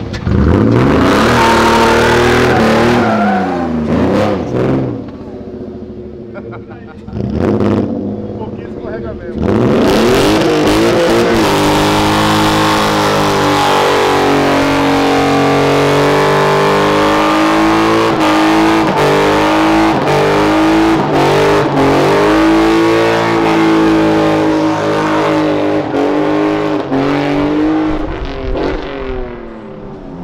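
Naturally aspirated engine of a BMW E36 3 Series drift car revving in short bursts, then held at high revs for close to twenty seconds while the rear tyres spin and screech in a smoky burnout. The revs waver up and down throughout, and the sound dies away near the end.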